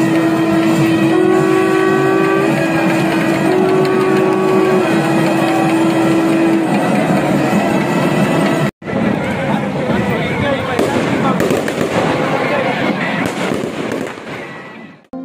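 Voices chanting in unison on long held notes that step slightly up and back down, over a loud crowd din. After a brief cut the chant is gone and only the crowd noise goes on, fading near the end.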